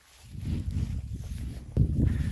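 Low, uneven rumbling and rubbing on a phone's microphone as the phone is handled and turned around, with a louder thump near the end.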